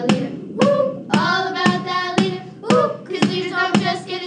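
A children's song: young voices singing over a steady beat of sharp hits, about two a second.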